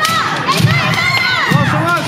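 Kendo kiai: several fighters' drawn-out shouts overlapping, each yell rising and falling in pitch, with no pause between them.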